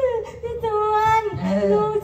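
A high, sing-song voice drawing out long held notes that slide up and down, halfway between singing and speaking, with a lower man's voice coming in briefly about halfway through.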